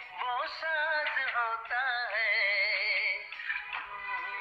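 A Hindi song with a solo voice singing a slow, wavering melody over music, holding one long note through the middle.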